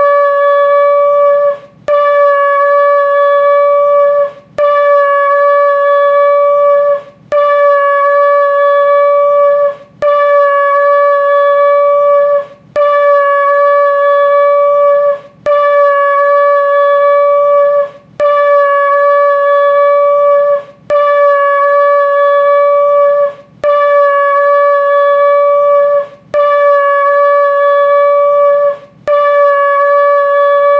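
A long spiralled Yemenite-style shofar blown in a steady series of long blasts. Each blast holds one unchanging note for nearly three seconds, followed by a brief break for breath, about eleven times over.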